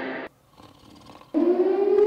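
The music stops and is followed by a second of near silence. Then, about one and a half seconds in, a loud siren wail starts suddenly and holds one steady pitch.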